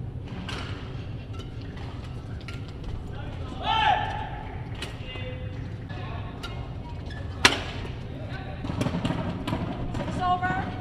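Badminton rackets striking a shuttlecock in a sports hall: scattered sharp cracks, the loudest about seven and a half seconds in, with a short shout about four seconds in.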